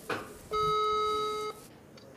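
Telephone ringback tone played through a mobile phone's loudspeaker: one steady beep about a second long, the called line ringing before it is answered. It has the 425 Hz pitch of the German ringing signal.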